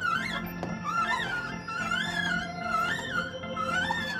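Small kiddie carousel playing its music: a single wavering melody over a steady low drone.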